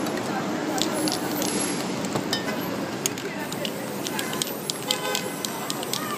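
Aerosol spray-paint can hissing as paint is sprayed onto a board, with a scatter of short sharp clicks that come thicker in the second half.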